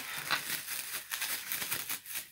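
Plastic cling film crinkling and rustling as it is pulled off its roll and handled, an irregular run of small crackles.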